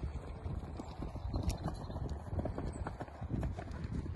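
Hoofbeats of a ridden horse on grass turf: a quick, uneven run of dull thuds.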